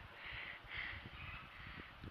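Faint outdoor background: a few soft, distant bird calls, repeated about twice in the first second, over low knocks of handling.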